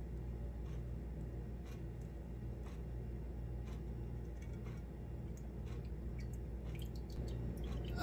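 Faint scattered clicks and small liquid sounds as a gloved hand works a crystal-encrusted skull loose in a glass bowl of cooled borax solution and lifts it out. The clicks come thicker near the end, over a steady low hum.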